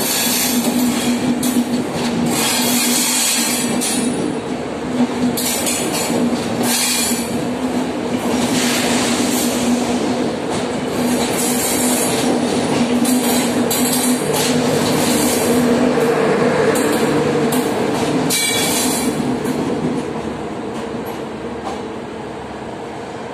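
Passenger coaches of a departing Indian Railways express train rolling past close by: a steady rumble and hum, wheels clattering over the rail joints, and repeated short high screeches. The sound drops off near the end as the last coach goes by.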